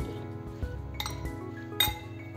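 A steel spoon clinks twice against a glass bowl of spice-coated green chillies, lightly about a second in and more sharply near the end, as it is set down in the bowl. Soft background music runs underneath.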